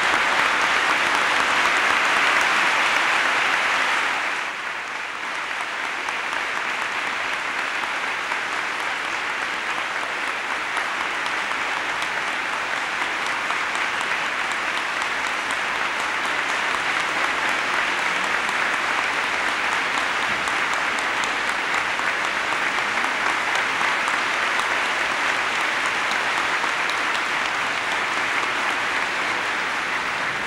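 Large audience applauding steadily: louder for the first four seconds or so, dipping slightly, then carrying on evenly and slowly building again as a sustained ovation.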